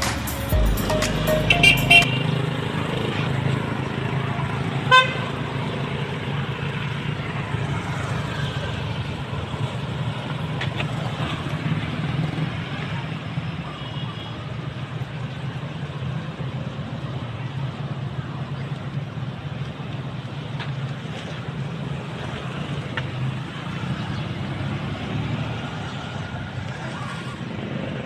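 Street traffic: a steady low hum of vehicles passing on a road, with one short horn toot about five seconds in.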